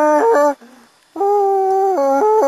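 A man's voice singing a short jingle tune in held notes that step up and down in pitch, with a brief break about half a second in.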